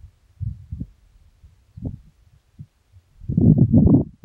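Wind buffeting the microphone: irregular low rumbling gusts, the strongest one near the end.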